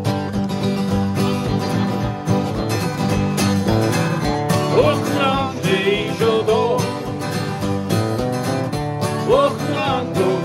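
Two acoustic guitars strumming a country-style song together, with a voice singing over the chords in the second half.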